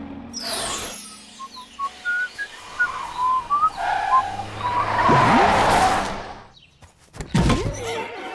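Cartoon sound effects: a string of short chirping, whistle-like tones, then a loud rushing noise with a swooping tone in it, and a few sharp knocks near the end.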